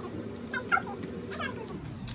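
A baby making a few short, squeaky vocal sounds, about half a second in and again near the middle, over a faint steady hum.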